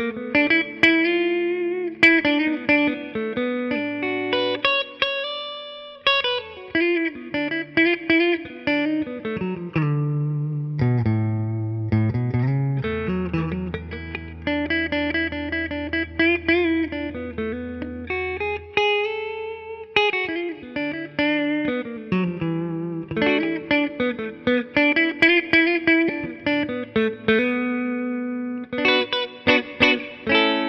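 1973 Fender Telecaster Deluxe electric guitar with Lollar Wide Range humbuckers, both pickups blended together, played through an amp: a continuous run of picked single-note lines and chords with a few bent notes.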